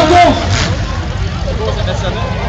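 Demolition derby cars' engines running in the arena as a low rumble, under voices over the loudspeakers. Loudspeaker music cuts off just after the start.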